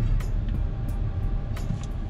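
Steady low rumble of engine and tyre noise inside the cabin of an Audi A5 S line quattro on the move. A faint steady beat of music runs over it.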